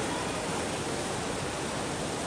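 Indoor waterfall: a column of water falling about two stories from an acrylic bowl and splashing into a whirlpool in the pool below, a steady rushing noise.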